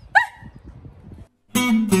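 A woman's single short, high-pitched shout. About one and a half seconds in, strummed acoustic guitar chords begin and ring on.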